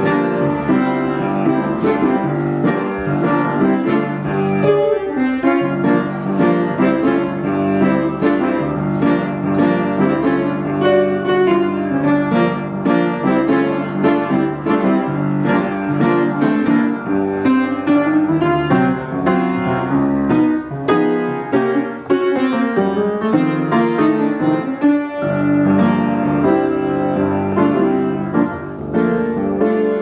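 An upright piano is being played: a continuous piece with a steady flow of notes and chords and no pause.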